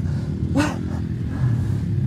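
Yamaha Raptor quad's engine idling steadily.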